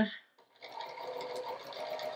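Juki straight-stitch sewing machine running steadily, stitching a seam through pieced fabric squares, starting about half a second in.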